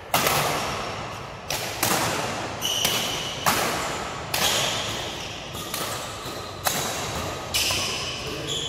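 Badminton shuttlecock being hit back and forth in a doubles rally: a string of sharp racket smacks, about one a second and sometimes two in quick succession, each ringing out in the hall's echo.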